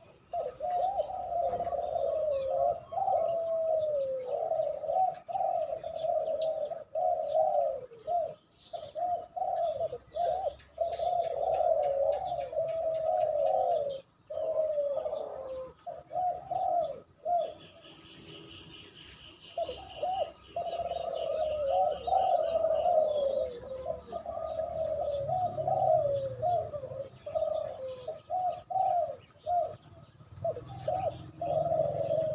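A caged spotted dove (terkukur) cooing over and over in long runs of calls, with short breaks and a longer pause a little past halfway. During the pause another bird gives a fainter, higher trill, and a few short high chirps come through now and then.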